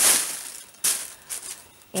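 Plastic wrapping of a needlework kit crinkling as it is handled: loudest at the start and fading, a sharper rustle a little under a second in, then a few faint rustles.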